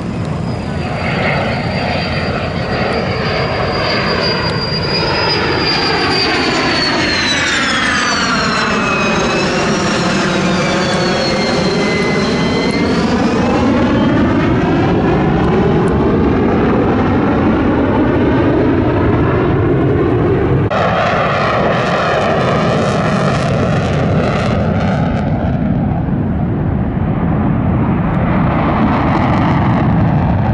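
F-16 fighter jet's engine during a low display pass: a loud, continuous jet roar with a high whine that slides down in pitch over several seconds as the jet goes by and then rises again. The roar changes abruptly about two-thirds of the way in and carries on as the jet pulls up into a climb.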